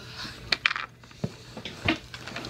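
Small hard-plastic Littlest Pet Shop toy pieces clicking and rattling against each other as they are handled, a handful of sharp clicks.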